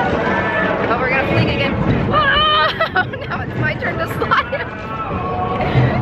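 Wordless voices and background crowd chatter, with a steady low rumble from the moving ride.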